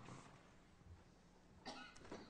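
Near silence: faint room tone, broken near the end by one short sound.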